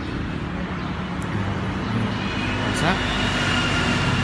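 Steady low motor-vehicle engine and traffic noise, with faint indistinct voices in the background.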